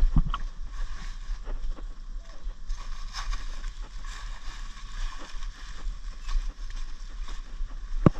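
Rustling and crackling of squash leaves and stems being handled, with many short irregular crackles, over a steady low rumble of wind on the microphone.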